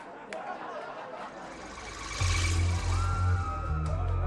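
Crowd noise in a concert hall, then about two seconds in a deep, steady synthesizer bass line starts up with a hissing swell above it: the opening of a live synth-pop song.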